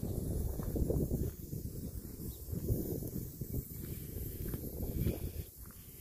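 Footsteps on dry grass with wind rumbling on a phone microphone, in an irregular low buffeting.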